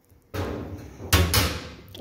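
Handling noise on a stainless steel meat grinder. A short rush of rustling leads into a heavier knock or thud about a second in, which then fades.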